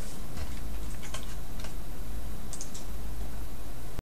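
A few scattered clicks of a computer mouse, with a quick cluster of clicks near three-quarters of the way through, over a steady low hum.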